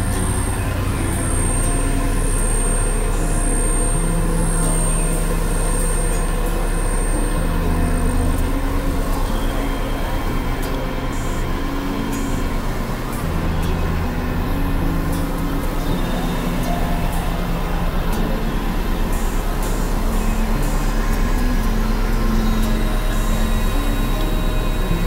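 Experimental synthesizer drone music: a dense, noisy industrial texture over a constant deep drone, with held low notes that shift pitch every few seconds.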